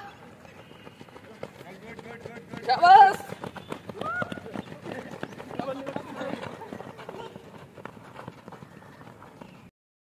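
Footsteps of a group of people running on hard dirt ground, a quick jumble of footfalls. A loud shout comes about three seconds in, with a few shorter calls after it. The sound cuts off suddenly just before the end.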